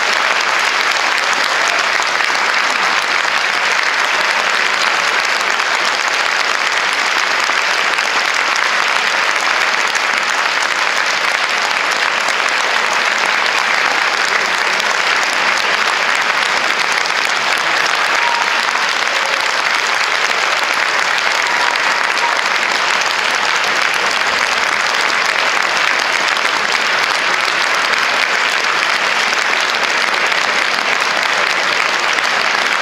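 Concert-hall audience applauding steadily and continuously.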